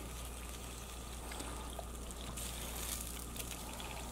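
Sausage chunks in a beer, honey and pepper-jelly sauce sizzling and bubbling faintly in a hot skillet, over a low steady hum.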